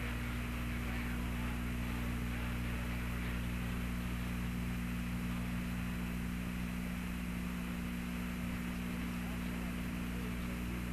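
Steady hiss and low electrical hum of an open air-to-ground radio voice channel, with nobody transmitting. The golf swing itself is not heard.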